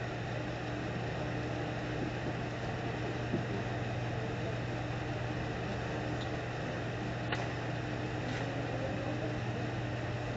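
Steady low room hum with a faint clicking sound about three seconds in and again about seven seconds in.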